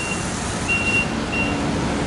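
Diesel rushing steadily from a pump nozzle into a semi truck's fuel tank, with three short high beeps sounding over it.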